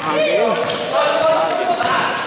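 Voices calling out and talking over one another in an echoing indoor court during a basketball game, with the ball bouncing.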